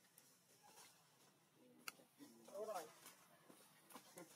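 Near silence, broken by one sharp click about two seconds in and then a short, faint, high-pitched call that rises and falls, from a young macaque.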